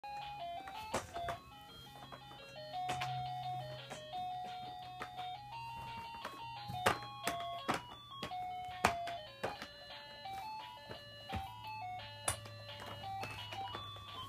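Electronic toy melody from a baby walker's play tray: a simple tune of stepped single beeping notes. It is broken by frequent sharp plastic clicks and knocks.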